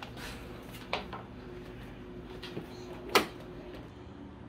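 A few light knocks and one sharper knock a little after three seconds in, against quiet room tone: small objects being handled and set down.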